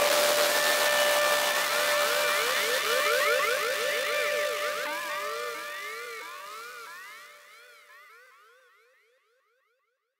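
Closing tail of an electronic dub/breakcore track after the beat has stopped: a siren-like synth effect sweeping quickly up and down in pitch, echoing over a held tone. It fades away and is gone about eight seconds in.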